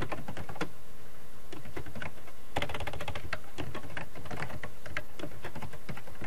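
Typing on a computer keyboard: quick runs of keystrokes with short pauses between them, as words are typed into a spreadsheet.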